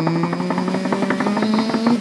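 A man's voice holding a long drawn-out note on 'King', rising slowly in pitch, over a fast, even drum roll, as a build-up announcing a guest.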